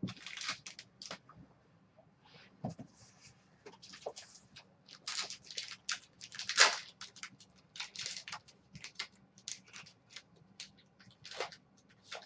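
Irregular light clicks and rustles of hands handling small things at a desk, the loudest a little past halfway.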